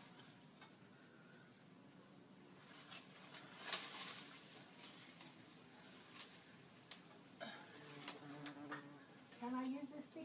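Mostly quiet, with light rustling of leaves and branches and a few scattered sharp snaps or clicks among the foliage. There is no steady sawing rhythm.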